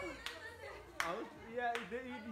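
Three sharp hand claps, about three-quarters of a second apart, the middle one loudest, over people talking.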